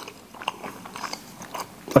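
A person chewing a piece of Turkish honey, a chewy white nougat-like sweet, with faint soft mouth clicks.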